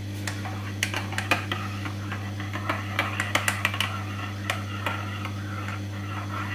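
A teaspoon stirring a drink in a mug, clinking against the inside in quick, irregular runs, over a steady low hum.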